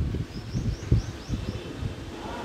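A bird chirping a quick run of about five short, high, falling notes, over low rumbling background noise.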